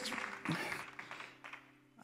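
Soft background music from a worship band: held chords that fade away over the two seconds, with the last of a crowd's applause dying out in the first second.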